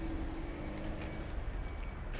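Steady low outdoor background rumble with a faint steady hum, no distinct events.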